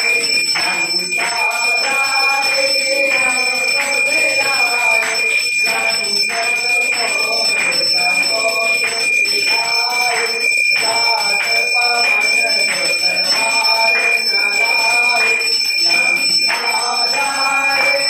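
Hindu aarti hymn sung by voices, over a continuous high ringing of temple bells held steady under the singing.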